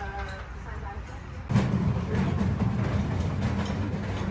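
Faint voices over a quiet background, then about one and a half seconds in a loud low rumble sets in suddenly and keeps going.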